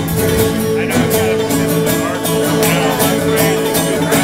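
Acoustic bluegrass string band playing live: picked guitar, banjo and upright bass in a steady, driving rhythm.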